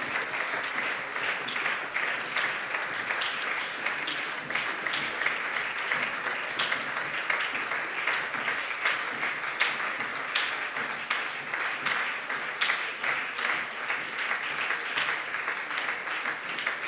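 Applause from many people in a parliament chamber: a dense, even clapping held at a steady level.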